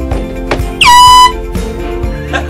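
A handheld canned air horn blasts once, a single loud honk of about half a second that starts with a quick upward sweep. Background music plays underneath.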